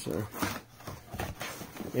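A folding knife slicing through a taped cardboard mailer, then the cardboard flaps being pulled open: irregular short scrapes, cuts and taps.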